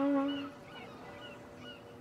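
Trumpet holding a single note that fades out about half a second in. Then a quiet outdoor background with a few faint bird chirps.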